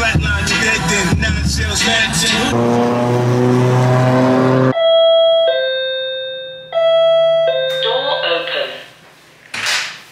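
Hip hop music ends on a held chord, then an electronic two-tone door chime sounds a high note falling to a lower one, ding-dong, twice, each note ringing out. A sharp click follows near the end.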